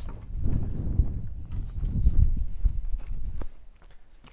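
Footsteps crunching and thudding on loose crushed stone as a person walks down a gravel slope, uneven steps that ease off near the end.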